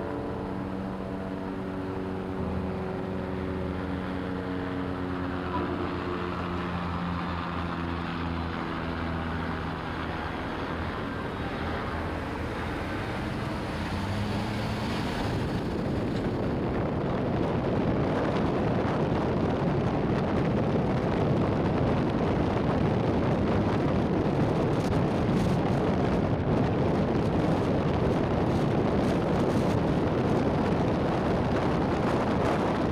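Sustained musical chords that step and fade over the first half, then a loud, steady rushing noise of a car driving on city streets, with road and wind noise, from about halfway on.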